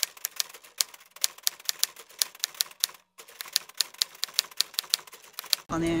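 Typewriter sound effect: rapid, uneven key clicks, several a second, with a short break about three seconds in.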